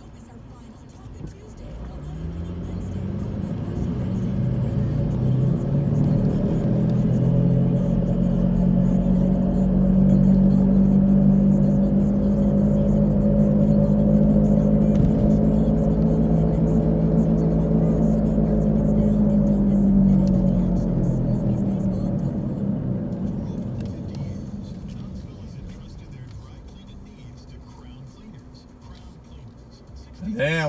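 Car engine and road noise heard from inside the cabin. The engine climbs in pitch and loudness as the car pulls away from a stop, holds a steady drone while cruising, then dies away as the car slows to a stop near the end.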